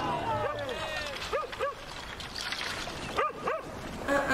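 A crowd of painted island tribesmen yelling war cries in a film soundtrack: short yelps that rise and fall, several coming in pairs, over a din of other shouting voices.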